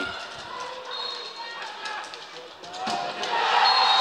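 Sharp clicks of hockey sticks striking the ball on an indoor court over low arena crowd noise, then the crowd's cheering swells about three seconds in as a goal is scored.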